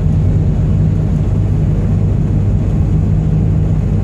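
Heavy truck's diesel engine droning steadily, heard from inside the cab while cruising, with road noise.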